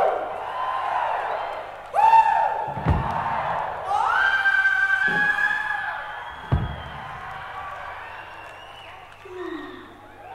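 Live rock recording played from a vinyl LP: a man's voice gives several long calls that slide up in pitch, hold and fall away, over audience noise. There are two low thumps, about three seconds in and again a few seconds later, and the calls die down towards the end.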